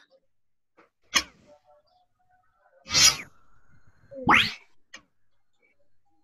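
Cartoon whoosh sound effects from an animated phonics video as letters swing into view. There are three, about a second, three seconds and four seconds in, the last one a rising glide.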